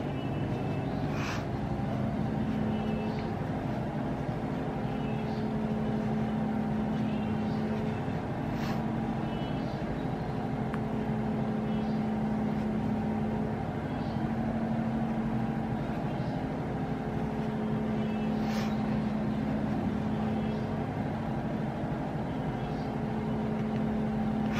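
A steady low machine hum, even in level, with a few faint clicks now and then.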